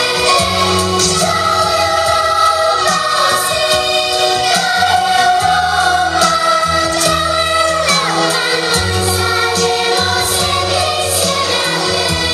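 A group of children's voices singing a song together over instrumental backing music with a steady bass line.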